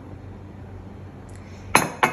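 Mostly quiet, then near the end a glass cup knocks once, sharply, against a hard surface and clinks.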